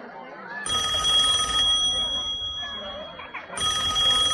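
Telephone ringing twice: one ring of about two seconds, a short pause, then a second ring beginning near the end.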